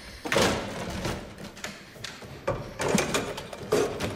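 Rattling and several knocks from glass double doors being worked at their handles and locked shut, over a noisy movie soundtrack.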